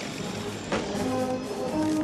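Orchestral film score with brass holding sustained notes, and a brief sharp hit about three quarters of a second in.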